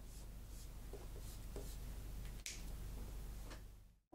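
Faint pen-on-paper sounds: a few light scratches and one sharper click about two and a half seconds in, over a low steady room hum that fades out just before the end.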